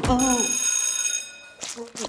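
A bright, bell-like ringing tone that sounds for about a second and dies away, followed by a short knock near the end.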